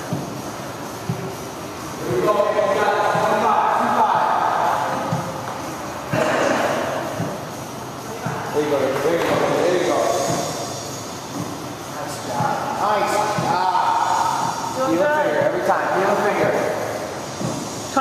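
Indistinct voices talking off to the side, in several stretches with short lulls between, over a steady background rumble.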